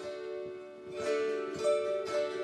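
Slow instrumental music on a plucked string instrument: single notes plucked about twice a second and left ringing, growing louder about a second in.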